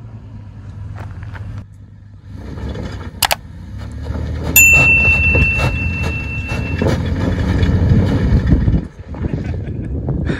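Toyota Tacoma pickup's engine pulling slowly up a steep, loose dirt-and-rock climb, growing louder about halfway through as the truck comes closer. A thin, high, steady tone sounds for about two seconds, starting at the same point.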